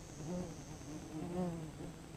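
A wasp flying close past the microphone, a wavering wing buzz that swells twice, louder the second time.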